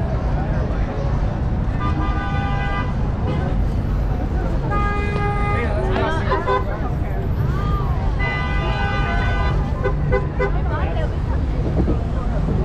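Vehicle horn honking three times, each blast steady and about a second long, over the steady rumble of street traffic and voices of a crowd.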